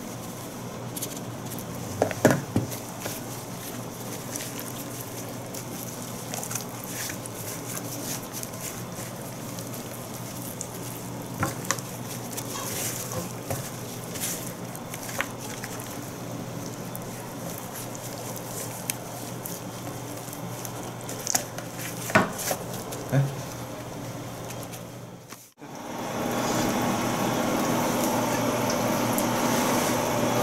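Gloved hands working an egg-coated whole fish in flour on a plate: soft rustling and handling with scattered light knocks on the plate, over a steady background hum. After a cut about 25 seconds in, a louder steady hum takes over.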